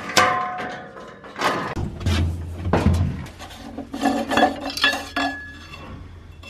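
Metal clanks and clinks on a combine's steel frame and engine deck, some ringing briefly, with a dull thud about two seconds in, as the engine-oil dipstick is handled and drawn out to check the oil.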